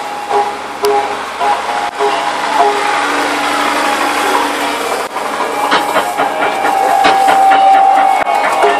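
Outdoor band music: long held notes growing louder in the second half, with irregular drum strikes over crowd noise.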